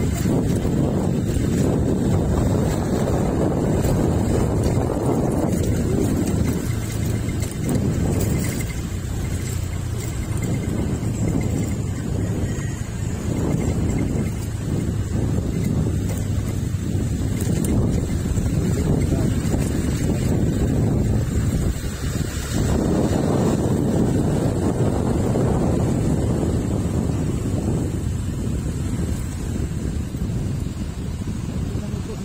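Wind buffeting the microphone over the low rumble of a moving vehicle, swelling and easing with a few brief lulls.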